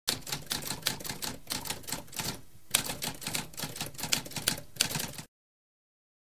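Typewriter typing: a fast run of key strikes, a short pause about halfway, then more strikes that stop suddenly a little after five seconds in.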